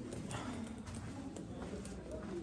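Footsteps on a carved rock floor, a few steps a second at a walking pace.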